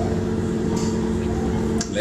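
Steady low hum of a running appliance, with a short sniff about a second in as a beer sample is smelled from a measuring cylinder, and a few light clicks near the end.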